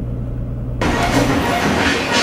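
Steady low hum of a car idling, heard inside the cabin, cut off a little under a second in by loud music that starts abruptly.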